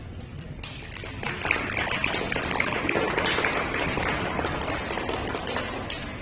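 Audience applauding, the clapping starting about a second in and carrying on steadily.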